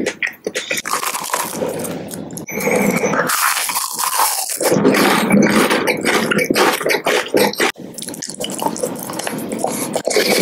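Close-miked wet mouth sounds: lips smacking and sucking, with many small wet clicks and a stretch of airy hiss about three to four and a half seconds in.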